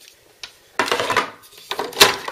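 Handling noise from plastic PC fans and their packaging: a small click, then two short spells of clattering and rubbing.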